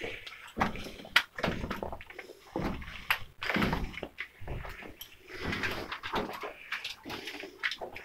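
Footsteps scuffing and crunching over loose rock, with irregular knocks and the rustle of clothing and gear as people scramble through a narrow mine tunnel.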